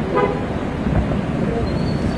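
Road traffic moving along a waterlogged street, with a short vehicle horn toot near the start.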